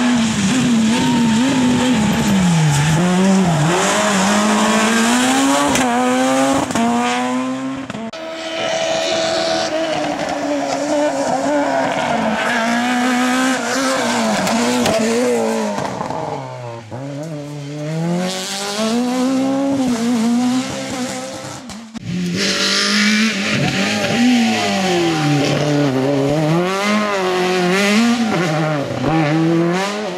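Rally cars driven flat out past the camera in several cut-together passes. Each engine revs high, drops in pitch through gear changes and braking for corners, then climbs again. The later passes are a Peugeot 309 rally car.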